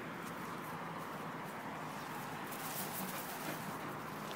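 Steady, low outdoor background noise with faint light rustles and ticks in the second half, as of steps brushing through wet grass.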